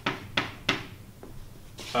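Chalk writing on a blackboard: three short, sharp strokes in the first second and a fainter one after, then a man's voice begins near the end.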